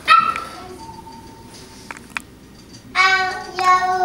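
Young child's voice: a brief high squeal at the start, then about three seconds in a held, high sung note.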